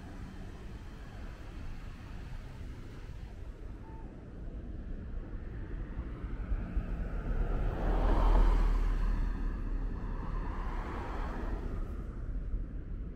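A car passing on the road close by, swelling to its loudest about eight seconds in and then fading, over a steady low rumble of street traffic.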